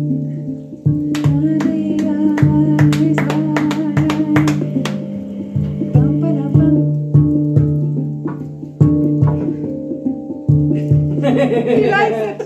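Steel handpan (hang drum) played with the hands: a melody of struck notes that ring on, over a low note struck again and again, with a quick run of strikes in the first few seconds. Laughter and talk come in near the end.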